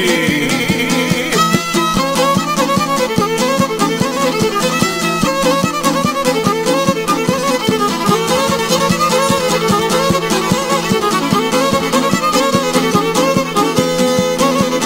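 Instrumental passage of izvorna folk music: a fiddle plays an ornamented, wavering melody over a steady rhythmic accompaniment.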